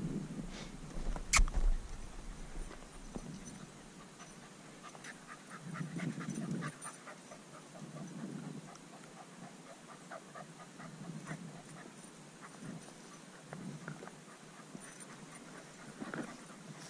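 Heavy, slow breathing, one breath every two to three seconds, over light crunching footsteps on stony, brushy ground, with a single sharp knock about a second and a half in.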